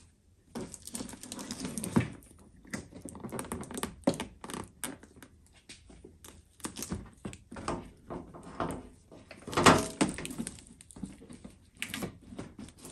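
Handling noise from a new DWVO projector headlight assembly still in its protective plastic film: irregular crinkling of the film and knocks and clicks of the plastic housing against the truck's headlight opening as it is set in place, with the loudest knock near ten seconds in.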